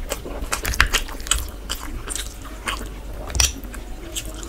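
Close-up chewing of chicken and khichuri rice by hand: a quick, irregular run of wet clicks and smacks from the mouth.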